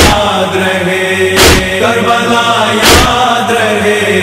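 Men's chorus chanting a noha in unison, with a loud chest-beating (matam) stroke about every one and a half seconds, three in all.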